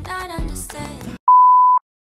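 Music with singing breaks off about a second in, and a television colour-bar test tone sounds: one steady high beep lasting about half a second, followed by dead silence.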